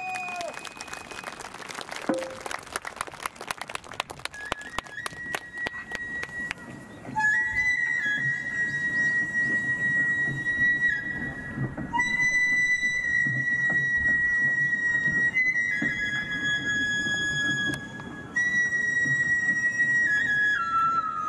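Taiko drums struck in a rapid run of strokes that thins out over the first several seconds. Then a Japanese bamboo transverse flute (shinobue) plays long held high notes, stepping to a new pitch every few seconds.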